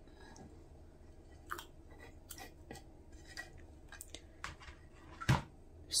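Faint, scattered soft scrapes and small taps of lemon slices being pushed off a wooden cutting board into a glass jar of herbal infusion, with one louder knock a little after five seconds in.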